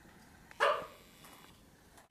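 A single short animal call, a bark or squawk lasting about a third of a second, about half a second in, with quiet room tone around it.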